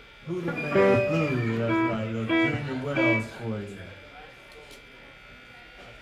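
A man's voice talking during a lull in a live blues club set, with a few plucked electric guitar notes mixed in, trailing off to low room noise about four seconds in.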